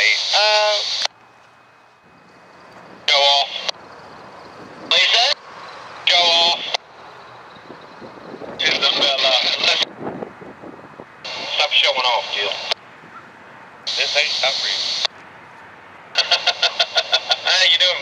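Railroad radio chatter heard over a scanner: short transmissions of train-crew voices, each starting and stopping abruptly, with quiet gaps between them. Near the end one transmission comes through choppy and stuttering.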